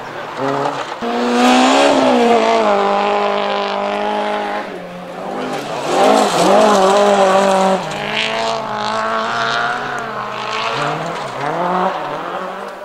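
Rally car engines at full throttle, the pitch climbing and dropping with each gear change as the cars pass. The loudest pass, about six seconds in, is a Ford Escort Mk2 rally car going by close.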